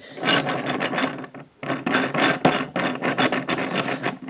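Lego store display spinner, a plastic drum turned by hand, its turning mechanism clicking and rasping in quick, uneven ticks, with a short lull about a second and a half in.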